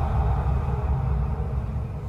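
Low, steady rumbling drone of a dark, ominous underscore in a dramatic soundtrack.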